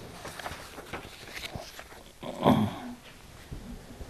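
Sheets of paper rustling and being shuffled on a desk. About halfway through comes a brief, louder vocal sound from a man, not words.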